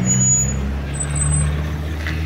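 A motor vehicle's engine running with a steady low hum, with a few brief high-pitched squeaks over it.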